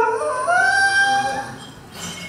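Live blues band: a long held note ends, then a single note slides up and is held for about a second before the sound falls away to a lull near the end.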